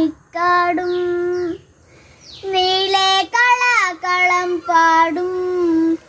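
A child singing a Malayalam song unaccompanied, in long held notes, with a short break about two seconds in.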